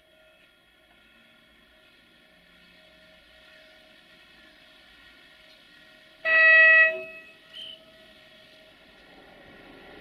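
Electric locomotive horn: one short loud blast about six seconds in, then a brief weaker toot. Under it, a faint steady hum and a rumble that grows louder near the end as the locomotive approaches.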